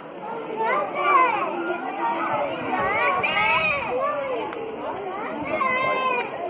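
Many children's voices talking and calling out over one another, a steady hubbub of young voices.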